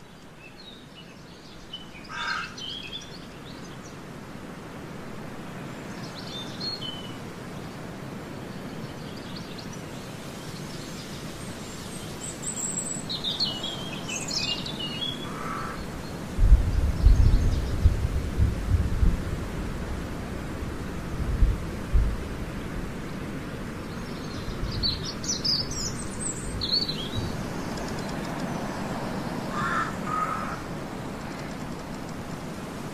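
Birds chirping now and then over a steady outdoor hiss, in short high calls spread through the stretch. About halfway through comes a stretch of low rumbling thumps, the loudest sound here.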